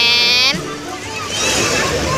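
A voice holding one note for about half a second, then brief scattered voices over a steady wash of surf noise.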